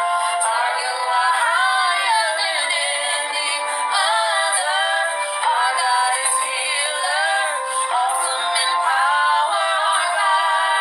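Music with a high-pitched sung voice whose notes bend and glide.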